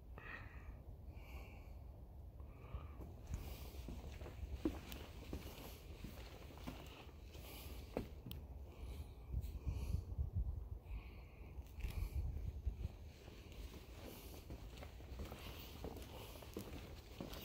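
Wind buffeting the microphone, a low uneven rumble, with a few faint footsteps on a wooden boardwalk.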